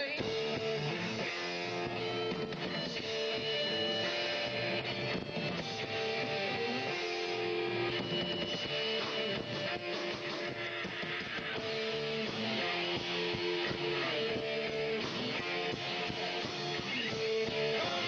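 Rock band playing live, led by strummed electric guitar with bass underneath, at an even level throughout.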